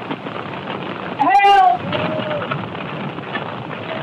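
A cat meowing: one loud meow a little over a second in, then a fainter one just after. Steady hiss throughout.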